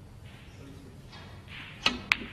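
A single sharp click of snooker balls striking near the end, as the cue ball hits the yellow.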